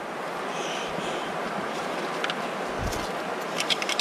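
Steady rush of creek water flowing over rocks, with a few faint clicks near the end as grit and debris are scraped out of a rock crevice.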